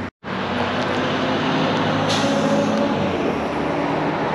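Road traffic passing close by on a busy road: vehicle engines and tyres going past, with a brief hiss about two seconds in.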